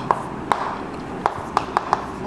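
Chalk tapping on a chalkboard as words are written: about six short, sharp taps at uneven intervals.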